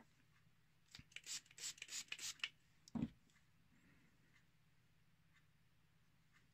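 Steel hair-cutting shears being handled: a quick run of light scrapes and rubs, then a single dull knock.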